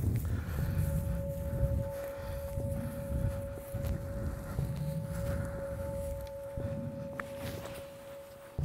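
Footsteps of people walking through dry grass, heard as irregular low thuds and rustling. A steady held tone from background music sounds underneath, starting about half a second in.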